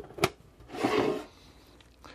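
A metal tin being handled and moved across a wooden bench: a sharp click about a quarter second in, then a scraping rub lasting about half a second.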